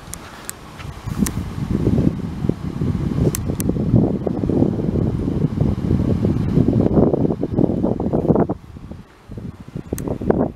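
Wind buffeting the microphone: a loud, gusty low rumble that builds about a second and a half in and drops away near the end.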